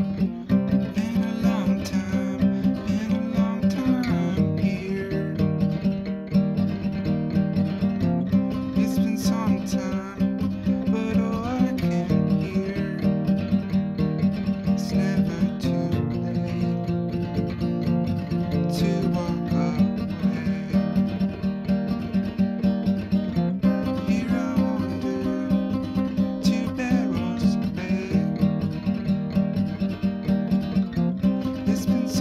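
Acoustic guitar strummed in a steady rhythm, with a man singing over it.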